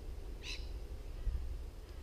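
A single short bird call about half a second in, over a steady low rumble.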